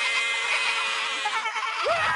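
Several cartoon voices screaming and yelling at once in a panicked jumble.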